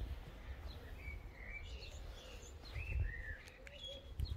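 Small birds chirping, several short call notes one after another, over a low background rumble.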